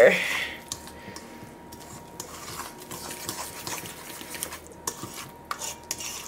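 A small metal utensil stirring and scraping quickly in a stainless steel mixing bowl, mixing water and oil into flour for a cake batter. It makes a quiet, steady, scratchy clatter.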